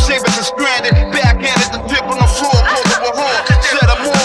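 Hip hop beat with deep kick drums that fall in pitch, roughly in pairs, under a rapped vocal.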